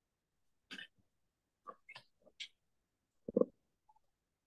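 A few short, clipped vocal sounds from a person on a video-call microphone, cut off to complete silence between them by the call's noise suppression. The loudest comes near the end.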